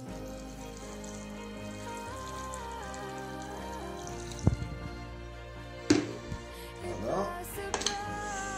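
Background music with long held tones and a slow melody. Two sharp knocks come about four and a half and six seconds in.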